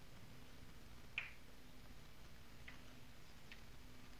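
Faint sounds of a marker on a paper worksheet as a box is drawn around a written answer. There is one sharp tick about a second in and a few fainter ticks later.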